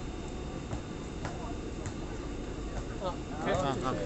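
Steady low rumble of a ride-on mini train running, with a few light clicks; people's voices and laughter come in near the end and are the loudest sound.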